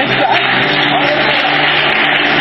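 Church congregation cheering and applauding in a loud, steady roar after a healing testimony.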